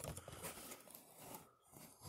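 Faint rustling handling noise close to the microphone, with a few small clicks.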